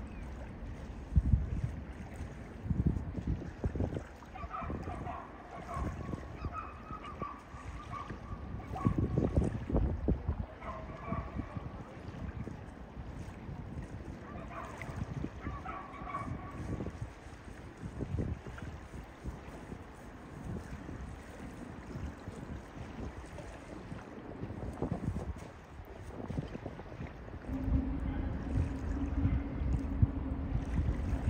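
Wind buffeting the microphone in uneven low gusts, with a few heavier thumps. A steady low hum comes in near the end.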